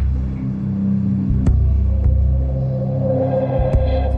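Suspense background music: a low, throbbing drone, joined about halfway through by a higher sustained note.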